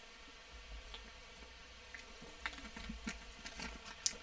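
A man drinking water from a bottle: faint swallows and small mouth and bottle clicks over a low steady room hum.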